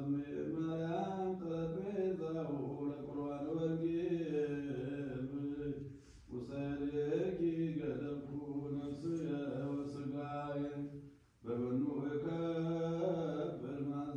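A man chanting Ethiopian Orthodox liturgy in long, drawn-out phrases, with short breaks for breath about six seconds in and again about eleven seconds in.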